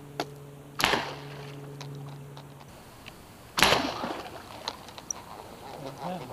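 Bowfishing compound bow shots: two sharp snaps about three seconds apart, the second louder. A steady low hum runs under the first half and cuts off before the second shot.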